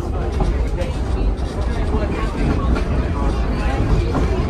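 Heard from inside the cabin, the 1925 Pacific Electric 717 streetcar is rolling along the track, making a steady low rumble from its wheels and running gear. Passengers are chatting over it.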